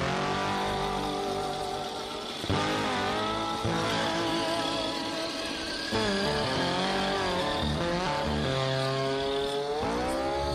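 Electric motor and gearbox of a Traxxas TRX-4 Mercedes-Benz G500 RC crawler whining as it drives, the pitch rising and falling with the throttle, heard in a few short cuts.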